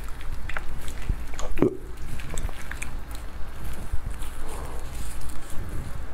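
Clear plastic-gloved hands handling and lifting a piece of glazed red-braised pork belly, close to the microphone. Soft wet handling noise with scattered small clicks and glove crinkle.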